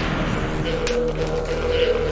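A metal cartridge case dropping onto a hard floor: a bright clink with a short metallic ring about a second in, over sustained intro theme music.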